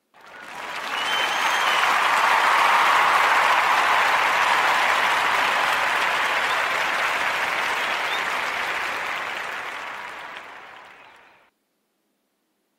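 Crowd applause that swells in over the first couple of seconds, holds steady, then fades out about half a second before the end.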